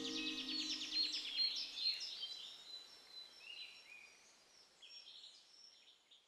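Outdoor birdsong: several birds chirping, with a quick trill near the start, fading away to near silence. The last of a music track dies out in the first second or so.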